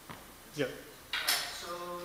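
Short knocks and a bright rustling scrape of handling noise, as a handheld microphone is taken up for an audience question, with a brief bit of voice near the end.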